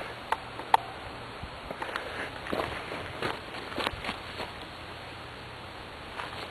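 Footsteps and rustling through leafy ground cover, with a couple of sharp clicks in the first second.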